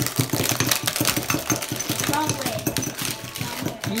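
A utensil stabbed rapidly and repeatedly into Oreo cookies in a cup, making a quick, uneven run of clicks and crunches as the cookies are crushed into crumbs.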